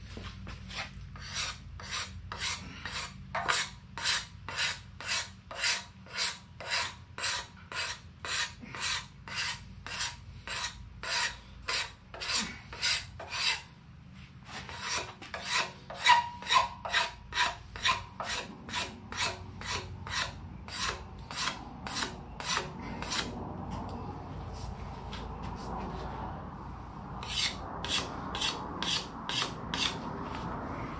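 Wood rasp shaping a wooden ax handle, in rhythmic rasping strokes about two a second. The strokes pause briefly about halfway through, and there is a short stretch of steadier, quieter rubbing before they pick up again near the end.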